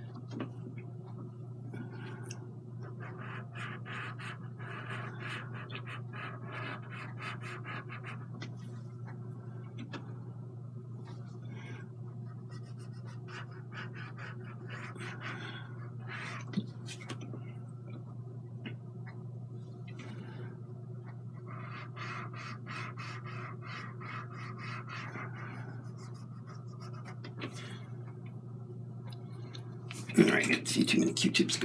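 Cotton swab rubbing oil paint on a textured canvas panel, in stretches of quick scrubbing strokes, over a steady low hum.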